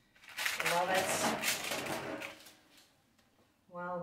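A woman's voice saying a few indistinct words over rustling and light clatter, from about a third of a second in to just past two seconds, as a parchment-lined metal baking pan is handled. Clear speech starts near the end.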